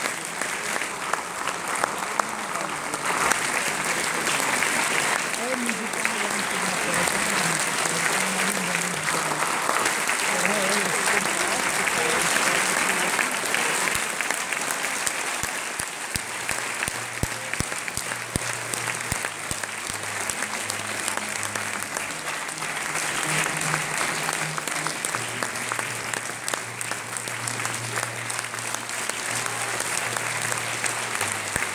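Theatre audience applauding at a curtain call: dense, sustained clapping from a large crowd that never lets up, with voices mixed into the crowd.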